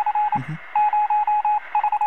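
Morse code beeps over radio static: a single steady tone keyed on and off in short and long pulses, like an incoming radio transmission.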